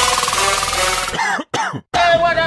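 Edited background music transition: a tone rising steadily in pitch, then short chopped sounds bending down in pitch, cut twice by brief dropouts to silence near the end.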